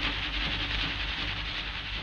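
Steady hiss over a low rumble, slowly getting quieter: the background noise of an old film-song recording as it ends.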